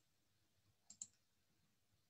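A computer mouse double-clicked once, about a second in, in otherwise near silence.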